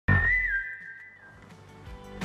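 A TV show's intro sting: a sudden low hit under a single high whistle-like tone that wavers slightly and fades away over about a second and a half.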